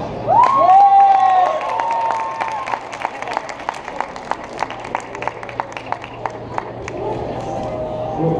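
Audience cheering after a stage performance: a few long, high 'woo' shouts in the first few seconds, then scattered hand-clapping that thins out, a weak round of applause.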